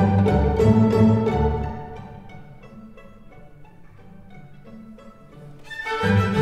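Background music with a steady beat; it drops to a quieter, sparser passage for a few seconds in the middle, then comes back in full near the end.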